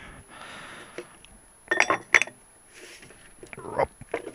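Metal motorcycle engine parts knocked together as they are handled on a workbench: two short metallic clinks about two seconds in, among quieter clicks and handling noise.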